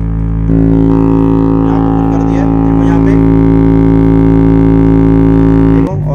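Woofer playing a steady low test tone of about 55 Hz from a phone tone-generator app, a loud drone with many overtones. It steps up in volume about half a second in and cuts off just before the end.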